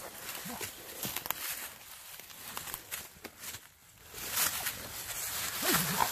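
Hounds scuffling with a raccoon in dry leaf litter: rustling and crackling of leaves and brush, with a few short animal vocal sounds.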